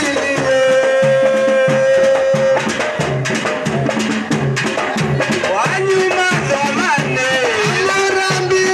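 Dance music with a steady drum beat, about two strokes a second, under a held melody line that moves between notes.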